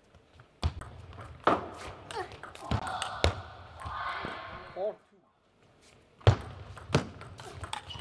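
Table tennis rally: the celluloid-type plastic ball cracking off rubber-faced rackets and bouncing on the table in a string of sharp clicks, with voices calling out, then a short pause and the next serve and return, two clicks near the end.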